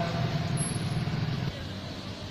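A nearby vehicle engine running with a steady low pulsing note that drops away abruptly about one and a half seconds in.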